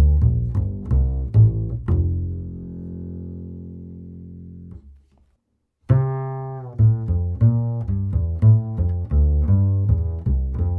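Rubner double bass played pizzicato, plucked triads at about three notes a second, on Galli BSN 900 light strings. About two seconds in, a last low note rings and fades out. After a short silence the same triad pattern starts again on Pirastro Evah Pirazzi light strings.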